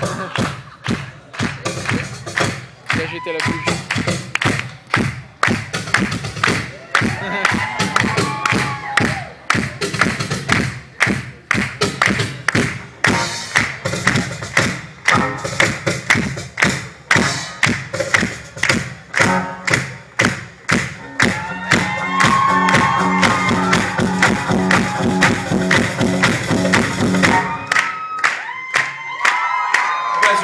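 Cajón drumming in a percussion showdown: a steady run of quick, sharp hand strikes on the wooden box, which stops about two seconds before the end.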